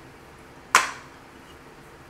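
A single sharp plastic click about a second in: the snap-on cap of an olive oil spray can being pulled off.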